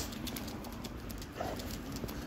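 Footsteps on an asphalt street: a steady run of light clicks and scuffs over a low rumble.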